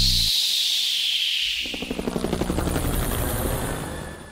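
Electronic sound-design effects closing an animated advert: a high whoosh sweeping downward over the first two seconds, with a low falling tone dying away early on. About a second and a half in, a rapid fluttering low buzz begins and runs until it cuts off abruptly.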